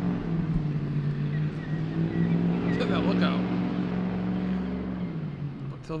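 A nearby vehicle engine running steadily at idle, a low even hum that shifts down slightly about five seconds in. A couple of short higher-pitched calls sound briefly around the middle.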